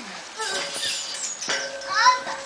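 Indistinct voices calling out, with short high cries, and no clear words.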